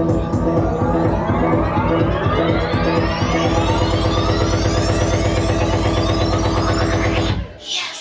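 Live electronic music played on synthesizers: a fast pulsing beat under rising pitch sweeps that build for several seconds, then the music cuts off suddenly near the end.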